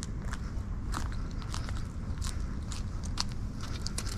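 Footsteps crunching on dry leaves and grit on asphalt, a few irregular crunches a second, over a steady low rumble of wind on the microphone.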